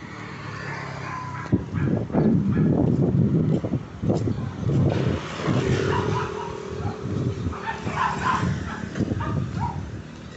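Roadside traffic: the engines of motorcycles and small utility vehicles running close by, with a steady low engine note in the first few seconds. Short, irregular sounds are scattered through it.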